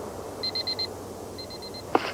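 Electronic beeping: two quick runs of four high beeps, about a second apart, then a sharp click at the end.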